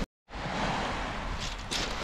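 Steady rushing outdoor noise of wind and sea on a shingle beach, after a brief dead silence at an edit cut. A few faint crunches come near the end.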